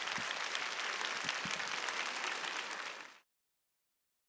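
Audience applauding, a dense patter of many hands clapping that cuts off suddenly about three seconds in.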